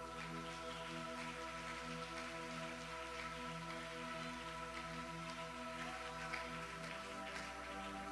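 Soft ambient music: a held keyboard pad chord with lower notes pulsing gently on and off, under a faint crackling, rain-like texture.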